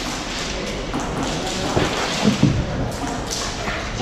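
Indoor airsoft match noise heard from a player's camera: a steady background din with a few sharp thumps and taps a little after midway, from players moving among the bunkers and BB fire striking them.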